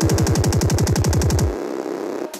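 Drum and bass remix in a build-up: a fast roll of low hits, each falling in pitch, that cuts off about a second and a half in and leaves a brief quieter pause before the drop.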